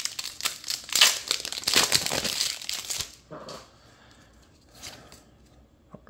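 Foil wrapper of a Magic: The Gathering booster pack being torn open and crinkled by hand, a dense crackling for about three seconds that then dies down to a few faint rustles.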